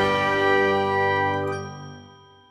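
Logo jingle: a bright, bell-like sustained chord rings out and fades away, its high notes dropping out first near the end.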